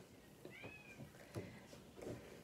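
Near silence, with one faint, short high-pitched call about half a second in that rises and then falls, like an animal's cry.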